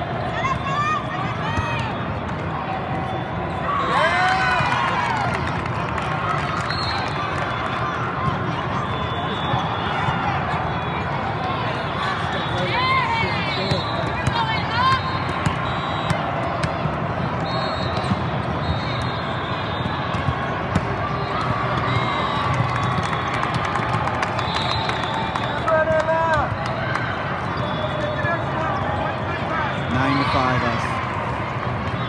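Busy indoor sports hall with several volleyball games going at once: a steady hubbub of voices and calls, with the short smacks of balls being hit and bounced and squeaks of sneakers on the court surface now and then.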